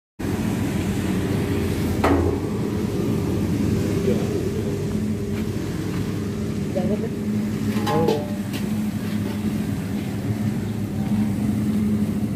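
Puffed-rice (muri) roasting machine running with a steady low hum. A sharp knock comes about two seconds in, and brief clattering about eight seconds in.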